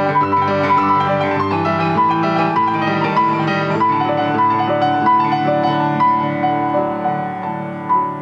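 Grand piano played solo in a steady flow of notes and chords. A loud chord is struck near the end and then rings.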